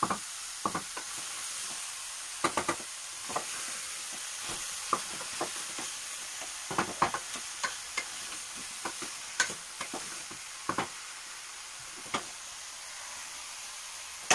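Diced ridge gourd and brinjal sizzling in oil in an aluminium pressure cooker, with a metal spatula scraping and clinking against the pot at irregular intervals as they are stirred.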